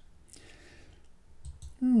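A couple of faint computer mouse clicks, stamping a brush in Photoshop.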